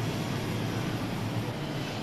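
Steady background noise of a large indoor shopping mall, an even low rumble with hiss and no distinct events.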